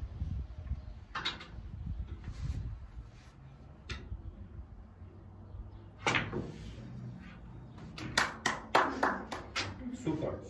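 A snooker cue strikes the cue ball about six seconds in, potting the black. Then a quick run of sharp clicks and knocks follows from the balls.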